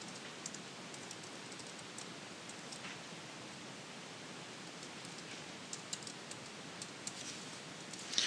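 Faint computer keyboard typing: scattered key clicks over a steady hiss, with a handful of keystrokes near the start and a quicker run of them in the last few seconds.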